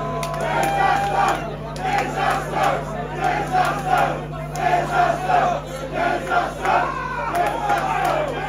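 Concert crowd shouting together in a steady rhythm, repeated chanted shouts under a steady low hum from the stage's sound system.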